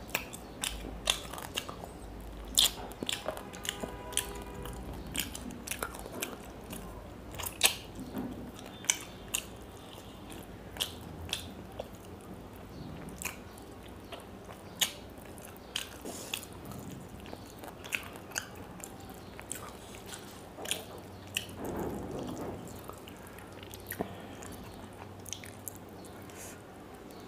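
Close-miked chewing and biting of fried fish eaten by hand, with irregular sharp crunches and wet mouth clicks every second or so.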